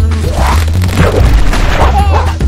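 Loud end-screen music with a heavy, steady bass line, with a few sudden boom-like hits over it.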